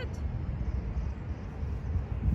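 Low, uneven rumbling background noise with no distinct events.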